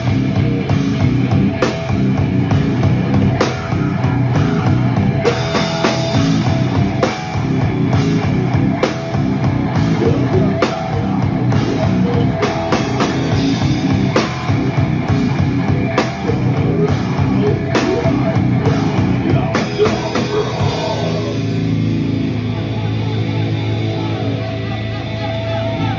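A hardcore band playing live: drum kit and distorted electric guitar pounding out a fast, heavy riff. Near the end the drums stop and a held guitar chord rings on.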